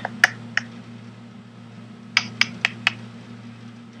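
About six short, sharp clicks from a computer input device as words are written on a digital blackboard: two near the start, then four in quick succession a little past the middle. A steady low electrical hum runs underneath.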